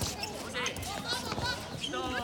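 A dodgeball bouncing on a hard outdoor court, a few dull thuds, with players' voices calling.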